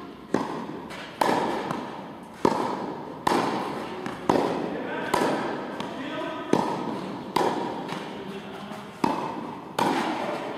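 Tennis balls being struck by a racket and bouncing on an indoor court, with sharp hits about once a second. Each hit rings out with a long echo in the large hall.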